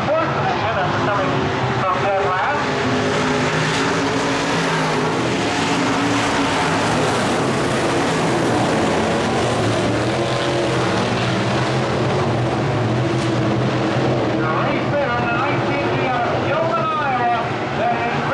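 IMCA Modified dirt-track race cars' V8 engines running together around the oval, a loud, steady blend of several engines. A voice comes in over them near the end.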